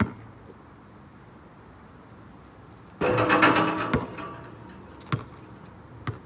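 A basketball on an outdoor court: a sharp bounce at the start, then about three seconds in a loud rattling clatter lasting about a second as the ball strikes the hoop's rim and backboard, ending in a hard knock. A single further bounce comes near the end.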